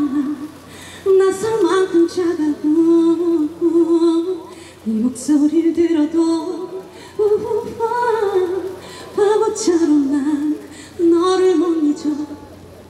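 A woman singing unaccompanied into a microphone over a PA, in long held phrases with short breaths between them.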